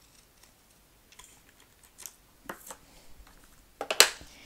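Scissors snipping through patterned paper, a few scattered, quiet cuts, with a sharper knock just before the end.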